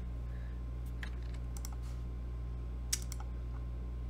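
A handful of scattered computer keyboard keystrokes, the sharpest about three seconds in, over a steady low hum.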